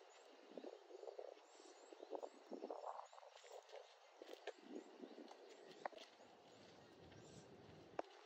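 Near silence: faint outdoor ambience with soft, irregular rustling and scraping, a little louder in the first three seconds.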